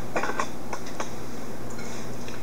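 A wooden spoon working stiff, dry cookie dough with chopped walnuts in a mixing bowl: a few short knocks and scrapes against the bowl in the first second, over a steady low hum.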